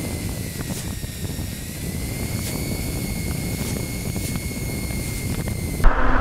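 Electric e-bike motor running at full throttle at about 31 mph: a steady high whine that rises slightly in pitch, over low wind and road rumble.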